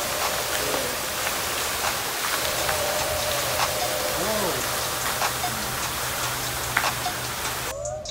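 Water pouring from a marble fountain's overflowing stone basins and splashing into the pool below: a steady, dense splashing that cuts off shortly before the end. Faint music runs underneath.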